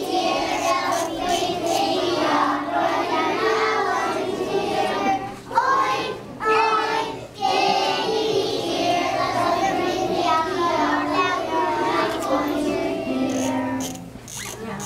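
A group of young children singing a song together, with two brief pauses between phrases.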